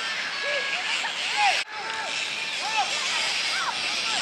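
Players calling and shouting across an outdoor football pitch, many short rising-and-falling calls, over steady background noise. A brief gap about one and a half seconds in.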